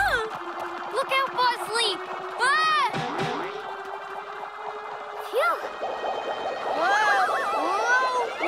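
Cartoon soundtrack: background music with a held note, overlaid by a series of short, springy rising-and-falling glide sounds in the manner of comic 'boing' effects. The glides come in clusters, around a second in, near the middle and again toward the end.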